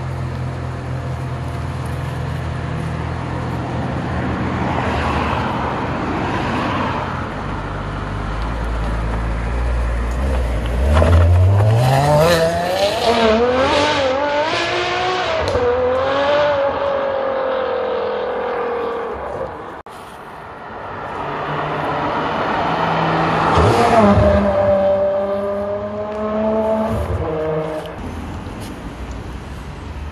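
Ferrari 599 GTO's V12 idling, then pulling away hard about 11 seconds in, its revs rising through several quick upshifts before it fades into the distance. After a cut, the V12 swells to a sharp rev about 24 seconds in and settles into a steady idle.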